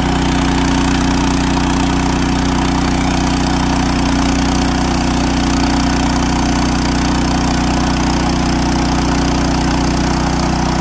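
Portable band sawmill's small engine running steadily as the band blade saws lengthwise through a log.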